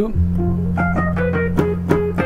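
Keyboard playing a quick line of short notes, about four or five a second, over a low bass note that is held from just after the start.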